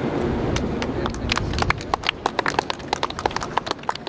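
A small group clapping: scattered, uneven hand claps that thin out and fade near the end.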